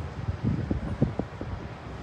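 Wind buffeting a phone's microphone outdoors: an uneven low rumble, with a few faint short knocks in the middle.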